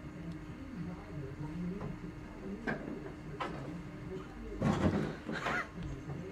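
A baby shifting and bumping against a hollow plastic toy box as it tips over the rim, with a couple of light knocks and then a louder scraping bump a little past three-quarters through. Faint voices and a steady low hum sit underneath.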